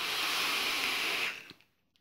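A long drag on a rebuildable dripping atomizer: a steady airy hiss of air drawn through the atomizer over a single Clapton coil firing at 40 watts, lasting about a second and a half. It ends with a faint click.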